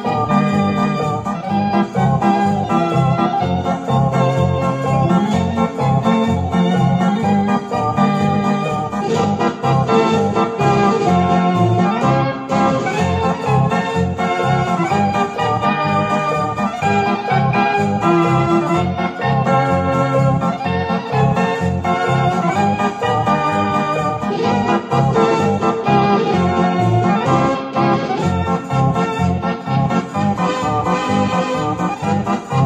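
Recorded music of a Decap dance organ played back on a home stereo: organ melody over a steady, regular bass beat, going on without a break.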